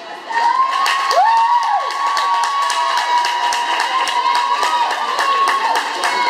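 Spectators cheering, starting suddenly just after the beginning: several high-pitched voices holding long, drawn-out shouts over scattered clapping.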